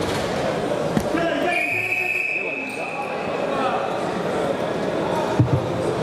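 A referee's whistle blows once, a single steady blast of about a second, stopping the wrestling action. Voices carry through a large echoing hall, with a dull thud on the mat twice.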